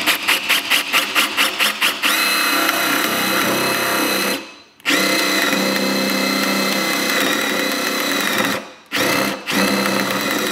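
Cordless Milwaukee M18 drill boring a three-quarter-inch hole with a spade bit. The motor pulses about six times a second for the first two seconds as the hole is started, then runs at a steady whine. It stops briefly a little before halfway and again near the end.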